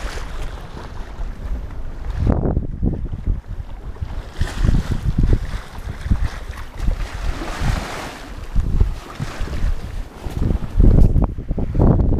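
Gusts of wind buffeting the microphone over the hiss of water rushing along the hull of a J/35 sailboat under sail; the wind rumbles come and go irregularly and are loudest near the end.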